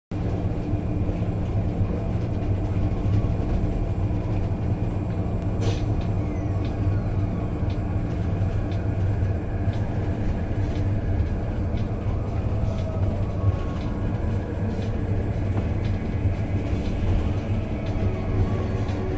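A car driving at highway speed: a steady low engine hum and tyre noise on the road, with occasional light clicks.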